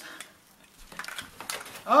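Faint rustling and a few light taps as a cardboard gift box is opened by hand, its lid and paper shifting. A voice comes in right at the end.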